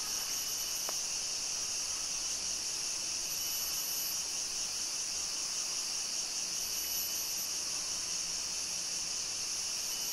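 A steady, high-pitched chorus of rainforest insects, an unbroken shrill drone.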